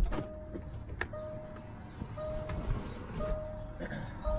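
Land Rover Discovery 4's door-open warning chime: a steady single-pitch beep repeating about once a second while the driver's door stands open, with a sharp click at the start and another about a second in.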